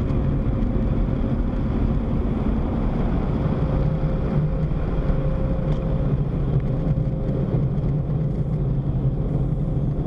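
Car engine idling and creeping forward at low speed, heard from inside the cabin: a steady low rumble with a thin steady tone above it.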